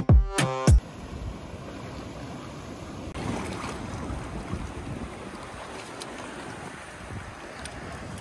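Background music cuts off about a second in, leaving steady outdoor seaside noise: wind on the microphone mixed with the wash of sea surf on rocks.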